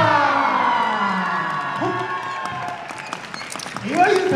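Recorded dance music ends on a held chord that slides down in pitch as it fades, giving way to audience applause and cheering with a couple of short shouts.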